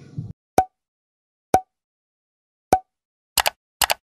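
Three short pops about a second apart, then two quick double clicks like a mouse button near the end: sound effects of an animated like/share/subscribe end screen.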